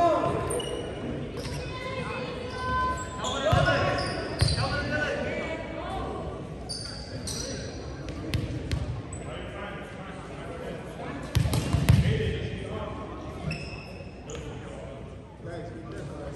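Gymnasium sounds between volleyball rallies: a volleyball bouncing on the hardwood floor a few times, loudest about twelve seconds in, sneakers squeaking briefly, and players' and spectators' voices echoing in a large hall.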